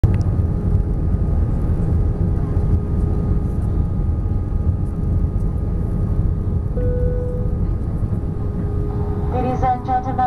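Airbus A320 cabin noise on the descent to landing, heard from a window seat over the wing: a loud, steady low-pitched noise of engines and airflow, with faint steady whines above it. A brief tone sounds about seven seconds in, and a cabin PA announcement begins near the end.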